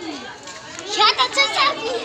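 Children's voices shouting and shrieking excitedly, with a loud high-pitched burst about a second in, over background chatter.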